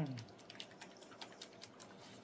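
Faint, quick, irregular clicks and taps of a small plastic paint bottle and its cap being handled in rubber-gloved hands.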